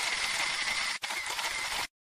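A steady mechanical whirring sound effect, an even hiss with a faint thin whine in it. It breaks off for an instant about a second in and cuts off suddenly just before the end.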